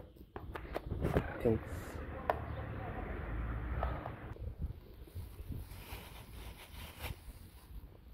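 Close rustling and handling noise for about four seconds, with a few sharp clicks, then faint scattered ticks.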